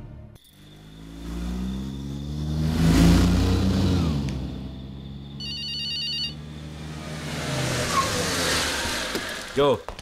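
A car engine running, swelling and falling away around three seconds in, then a mobile phone ringtone trilling briefly just past the middle.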